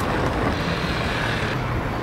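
Steady hiss and low rumble of street traffic.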